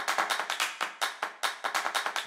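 Popcorn-popping sound effect: a rapid run of sharp pops, about seven a second.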